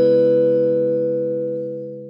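Intro logo jingle: the last struck chord of a short three-note chime rings on, held steady and slowly fading away.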